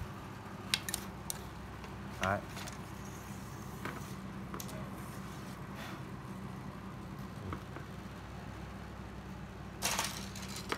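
Sparse light clicks and clinks from a telescopic fishing rod being handled, its metal line guides knocking together, with a louder click near the end, over a steady low hum.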